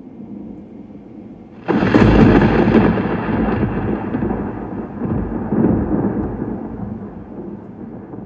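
Thunder sound effect: a low rumble, then a sudden loud thunderclap a little under two seconds in, followed by a rolling rumble that slowly fades.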